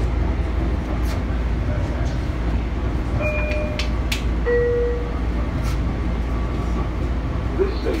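Steady rumble of a moving LIRR commuter train heard from inside the car, with a few clicks from the wheels and track and two brief tones about three and four and a half seconds in. An onboard announcement begins right at the end.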